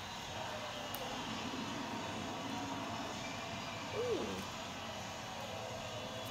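Steady background hum across the room, with a short "ooh" from a child's voice about four seconds in.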